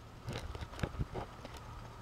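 An open glass jar of dried, chopped marshmallow root being handled: a few faint, short clicks and rustles as the dry root pieces shift inside.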